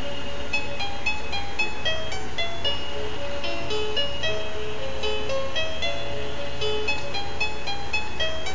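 Crib mobile playing a lullaby: a simple tune of short, evenly paced notes, about three a second, over a steady low hum.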